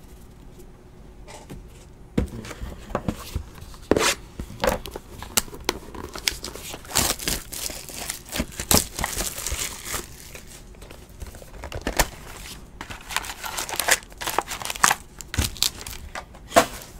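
Plastic shrink-wrap being torn and crinkled off a sealed box of trading cards, then a foil card pack being handled. It is a run of irregular crackling, ripping and clicks, starting about two seconds in.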